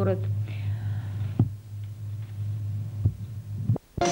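A steady low electrical hum with a few faint clicks, and a brief dropout of the sound just before the end.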